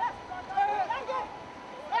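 Speech: a voice calling out "tight, tight", with a faint steady high tone underneath throughout.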